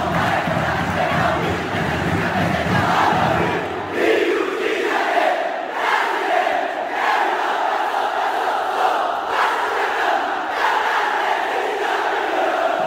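Large football stadium crowd chanting and singing together, loud and continuous.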